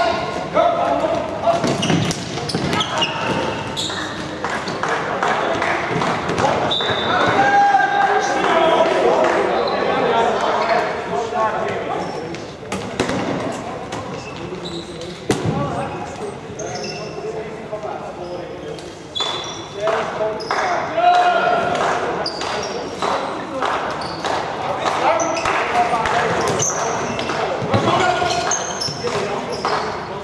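Floorball game sounds echoing in a large sports hall: frequent sharp knocks of sticks on the plastic ball and on the boards, under players' shouts and calls.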